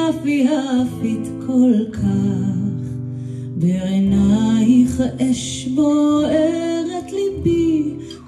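A woman singing a melody with an acoustic guitar accompaniment.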